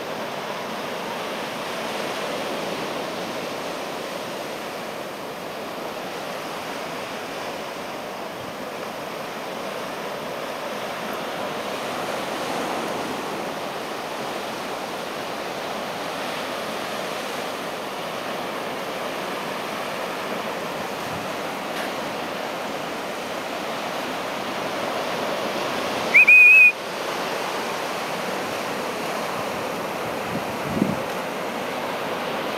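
Steady wash of small waves breaking on a sandy beach. Near the end comes one short, loud, high whistle, rising at the start and then held briefly.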